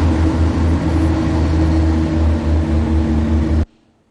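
Road grader's diesel engine running steadily and loud, a low rumble with a steady drone over it, cut off abruptly near the end.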